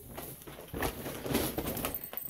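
Rustling and small clicks of packaged items being rummaged through and picked up: a dense crackly haze of handling noise.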